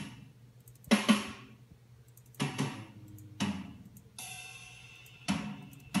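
EZ Drummer 2 virtual drum kit samples playing as separate, irregularly spaced drum and cymbal hits, each dying away, with one longer ringing cymbal hit about four seconds in. The software is sounding correctly in standalone mode.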